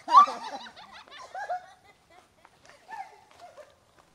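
Laughter after a fright, loudest in the first second and trailing off, with another short laugh about three seconds in.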